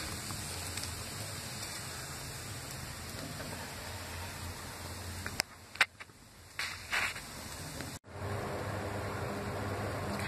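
Raw banana slices frying in oil on a tawa, with a steady sizzle. About halfway through the sizzle drops back for a couple of seconds and a few short clicks come through, then it returns after a brief cut.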